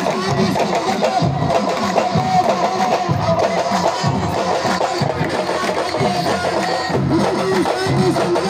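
Loud traditional drumming music, a dense, fast run of drum strokes with a held pitched line above it, played for dancing.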